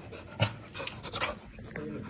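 A young dog panting in short breaths, with a sharp knock about half a second in.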